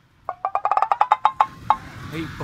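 A quick run of about fifteen pitched wood-block knocks over a second and a half, spacing out toward the end, typical of a comedy sound effect.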